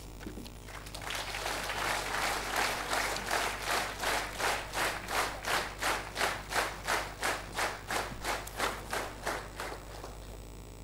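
An audience applauding. It starts about a second in as a spread of clapping and settles into clapping in unison on an even beat, about three claps a second, which stops just before the end.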